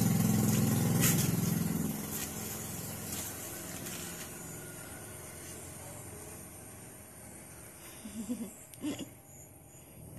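An engine droning, loudest in the first two seconds and then fading away. There are a couple of brief voice sounds near the end.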